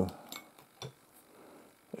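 A few faint clicks and a soft rustle from a small bolt being handled and tried in a threaded fitting on a radio chassis.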